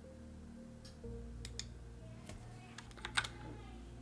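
Faint keystrokes on a computer keyboard, a scattered handful of clicks from about a second and a half in, as code is typed, over soft steady background music.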